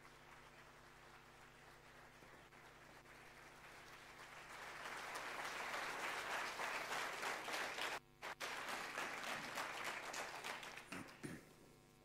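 Theatre audience applauding. It builds to full strength about five seconds in, cuts out briefly twice around eight seconds in, then dies away just before the end.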